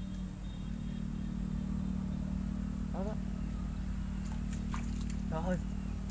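Steady low drone of an engine running somewhere off, with a thin high whine held above it.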